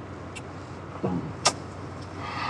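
Low, steady background hum, with a short voice sound about a second in and a sharp click just after it.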